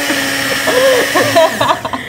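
Small personal blender running steadily as it blends a protein shake, then cutting off about a second and a half in.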